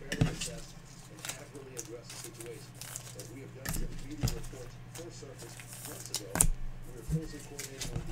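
A few sharp clicks and taps, the loudest about six and a half seconds in, over a steady low hum.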